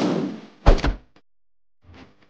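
Sound effects for an animated title graphic: a loud noisy swell fades out over the first half-second, then a single heavy impact hit just under a second in. It goes near silent after that, with a few faint clicks near the end.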